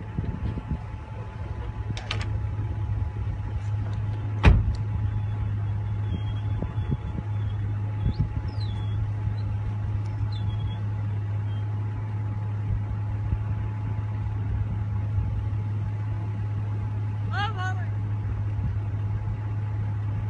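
A motor vehicle running with a steady low hum, and one sharp knock about four and a half seconds in.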